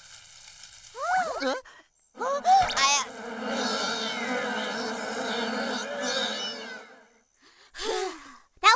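A swarm of cartoon bees buzzing steadily for about four seconds, after a couple of short vocal cries.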